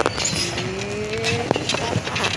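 A motor vehicle's engine note rising steadily in pitch for about a second, with a sharp knock near the end.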